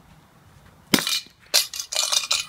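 Two hard blows on a globe piggy bank about half a second apart, a second in; the second one breaks it, followed by a clattering and clinking of loose pieces.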